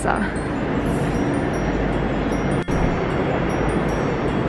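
A steady wash of background noise with high, tinkling chime-like tones throughout. The sound drops out briefly about two and a half seconds in.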